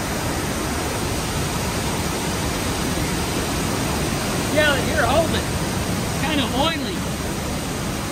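Rice mill machinery running, a steady, even noise with no rhythm. Voices talking over it in the second half.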